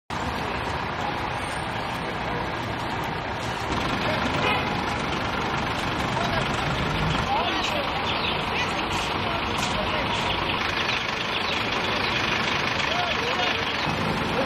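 Truck engine idling steadily under city-square noise, with indistinct voices; it gets a little louder about four seconds in.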